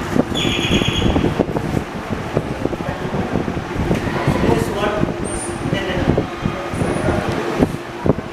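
Indistinct voices talking, none of it clear enough to make out as words, over a steady hum.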